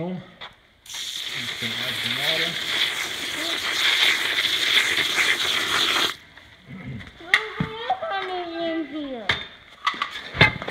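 A trowel stirring wet slush of snow and water in a plastic pail: a steady, crackly hiss that starts about a second in and stops abruptly about six seconds in.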